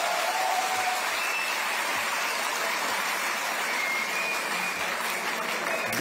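Large audience applauding steadily.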